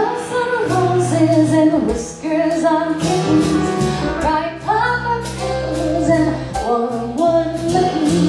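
A woman singing a melody into a microphone, accompanied by a band with bass notes and drum hits underneath.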